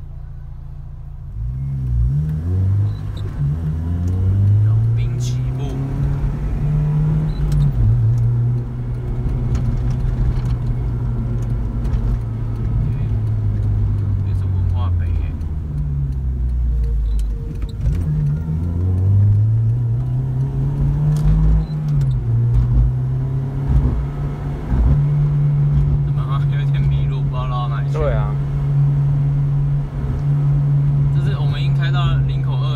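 Acura RSX Type S (DC5) K20A 2.0-litre four-cylinder with an aftermarket exhaust, heard from inside the cabin while driving. The engine note climbs under acceleration about two seconds in, drops at an upshift and holds a steady cruise, then climbs again after eighteen seconds, drops at another shift and settles into a steady drone.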